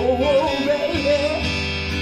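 Live rock band with strummed acoustic guitars and bass: the male lead singer sings a long, wavering held 'oh' that slides up at the start.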